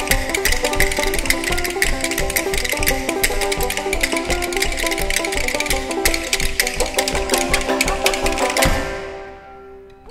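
Banjo picking a fast old-time tune over two sets of rhythm bones clacking a rapid, dense rhythm. The tune ends about nine seconds in, with a last banjo note ringing out and fading.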